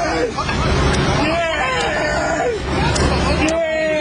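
Indistinct voices of several people talking over one another, with a steady low rumble underneath.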